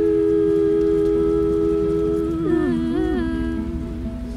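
A man's and a woman's voices holding one long note together in two-part harmony, then sliding through a short run of notes a little past halfway, over acoustic guitar.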